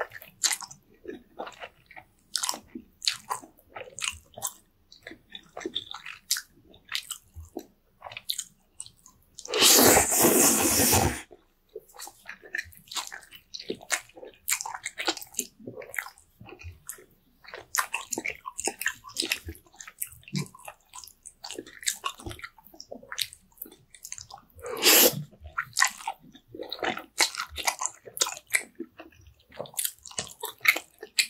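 Close-miked eating of saucy noodles: wet chewing and lip smacking throughout. One long, loud slurp of noodles comes about ten seconds in, and a shorter slurp comes later.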